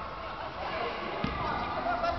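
Faint chatter of several voices in a large gymnasium, with a single thump about a second in.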